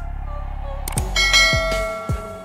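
A low, steady music bed, then a click about halfway through followed by a bright ringing bell chime. This is the sound effect of a YouTube subscribe-button and notification-bell animation.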